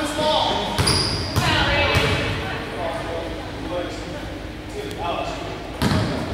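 A basketball bouncing on a hardwood gym floor: three bounces a little over half a second apart about a second in, and another near the end, echoing in the large gym over the chatter of voices.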